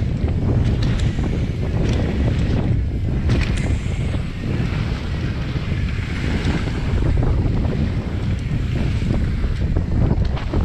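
Wind rushing over an action camera's microphone as a mountain bike rolls fast down a dirt trail, with a steady low rumble from the tyres and a few sharp clicks and rattles from the bike in the first few seconds.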